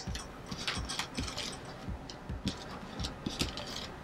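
Hands smoothing and pressing gathered jersey fabric and curtain tape on a wooden table. Faint fabric rustling with soft, irregular little taps.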